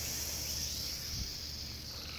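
Garden hose pistol-grip spray nozzle spraying a jet of water, a steady high hiss.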